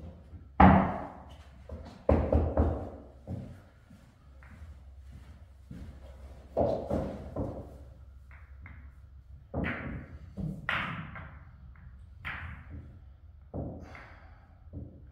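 Pool balls clacking and knocking as they are gathered and racked for 9-ball: a series of separate sharp knocks, the loudest about half a second in.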